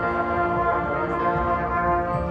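Marching band playing slow, sustained chords, with many notes held steadily together.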